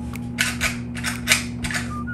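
Small plastic McDonald's Happy Meal play-set toy being worked and shaken in the hands, giving about five short plastic clacks and rattles over a second and a half.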